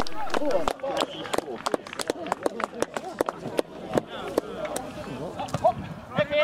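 Men's voices calling and shouting on an outdoor football pitch, with scattered sharp claps or knocks. It is louder for the first moment, then drops to a quieter stretch of short calls.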